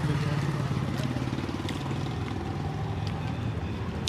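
A motor vehicle engine running steadily, a low, even hum with rapid pulsing.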